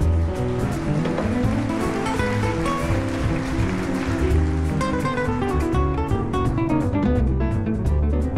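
Jazz band playing live: strummed guitar over a double bass and drums, with a hissing wash swelling in the middle and fading again.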